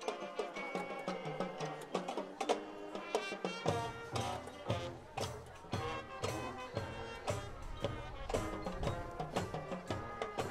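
High school marching band playing a field show: brass and drums with a steady beat, the low brass and bass coming in about four seconds in.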